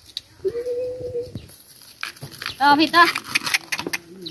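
A dog whining once, a steady held note of just under a second, while fresh bamboo shoots are peeled by hand, their husks crackling and tearing.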